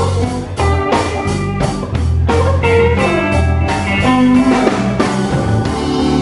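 Live blues band playing an instrumental stretch between sung lines: electric guitars over bass and a steady drum beat.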